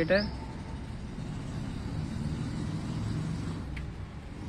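Low, steady rumble of a motor vehicle engine in the background, growing a little louder mid-way.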